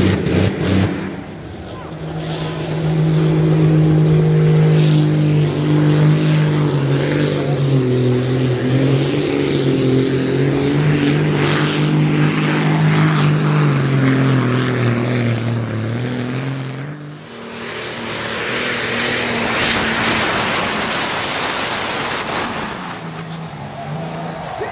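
Diesel Supersport pulling tractor under full load pulling the brake sled, with one steady, strong engine note that wavers and sags in pitch toward the end. The note drops away suddenly about seventeen seconds in, leaving several seconds of noise.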